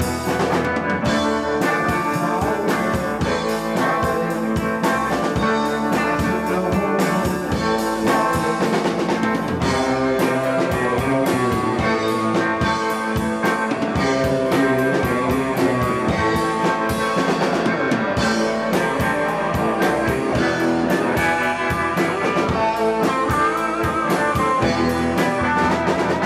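Live rock band playing: electric guitars over a drum kit, loud and steady throughout.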